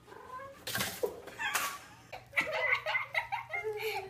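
A domestic cat meowing, with two short noisy bursts in the first two seconds.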